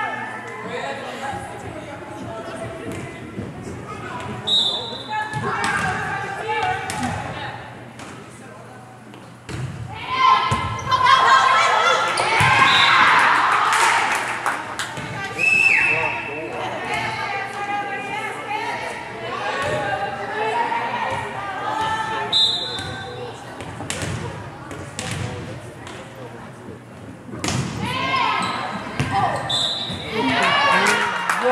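Indoor volleyball play in a large gym: the ball being struck and hitting the floor, with players and spectators calling and shouting. Short, high whistle blasts from the referee sound three times, the last just before a serve.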